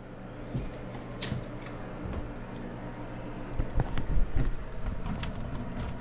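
Scattered light clicks and knocks from handling meter leads and wiring inside a sheet-metal air handler cabinet, over a steady low electrical hum.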